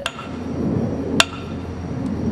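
Sharp taps on a car's window glass, each with a brief ringing clink: one at the start and another about a second later, over a low background rumble.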